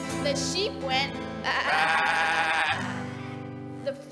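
Acoustic guitars strumming under a group of voices singing a children's song, with a long, wavering held note in the middle that imitates an animal call.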